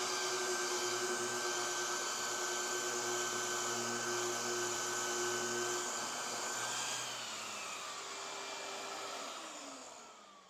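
Random orbital sander running steadily against the wooden plywood hull, with a dust-extraction vacuum drawing through its hose. From about seven seconds in the motor noise winds down, its pitch falling as the machines are switched off.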